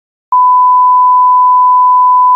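Broadcast test-pattern tone: a single loud, steady pure tone that starts about a third of a second in.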